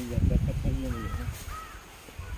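A man's voice speaking briefly, then a bird giving two short arched calls about a second in.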